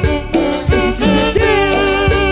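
Live dance band playing a song, loud: a wavering lead melody over stepping bass notes and a steady beat.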